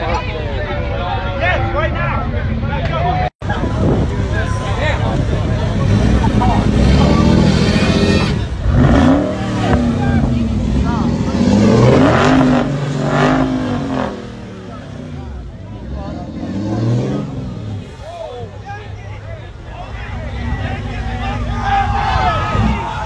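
Pickup truck engine revving up and down several times while towing a car stuck in beach sand, the revs bunched in the middle and easing off in the last part, with a crowd talking and shouting over it.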